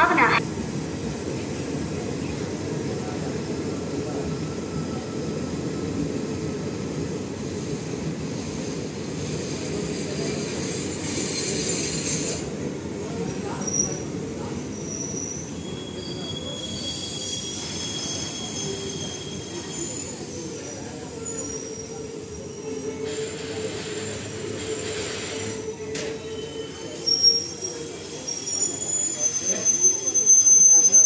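Express train's passenger coaches rolling slowly past the platform as the train arrives, their wheels rumbling steadily on the rails. Thin high-pitched wheel squeals come and go through the second half.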